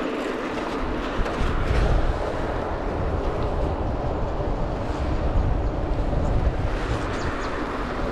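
Steady rush of wind on the action camera's microphone and mountain-bike tyres rolling on asphalt while riding, with a fluctuating low rumble underneath.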